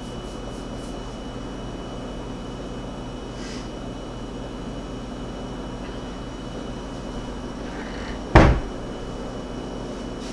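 Steady low electrical hum with a faint high whine, broken by one sharp thump about eight seconds in.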